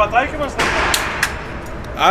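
A single gunshot about half a second in, with a reverberant tail in the hard-walled indoor range, followed by a few sharp clicks. A man's voice is heard briefly just before it.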